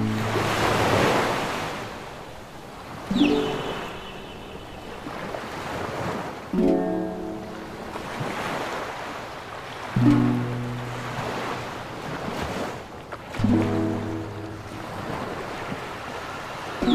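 Slow, soft relaxing music, a low chord struck about every three and a half seconds and left to ring, over ocean surf washing in and out.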